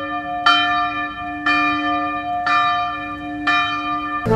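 A bell tolling about once a second, each stroke ringing on into the next, laid over the picture as an edited-in meme sound effect.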